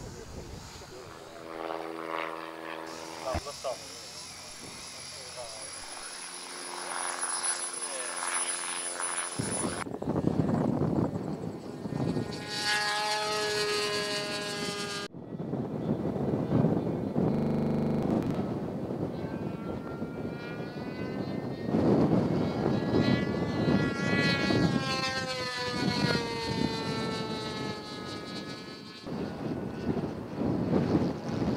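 Radio-controlled model aircraft engine running in flight, its pitch rising and falling as the plane manoeuvres and passes, with a falling glide late on as it flies by. The sound changes abruptly twice.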